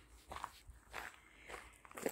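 Faint footsteps, about four steps at a steady walking pace.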